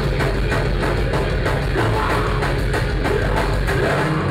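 Live hardcore punk band playing loud, heavy rock: electric guitars through amplifiers over a fast, steady drum-kit beat, about five hits a second.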